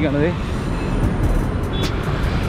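Busy city street traffic: motorcycles and a bus passing close by, with a steady low rumble of engines and tyres.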